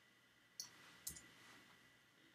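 Two faint clicks of computer keys, about half a second apart, as selected text is deleted in a code editor.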